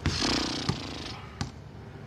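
A long, breathy sigh, a resigned exhale before giving in. Over it come sharp knocks at the start and about 0.7 and 1.4 seconds in.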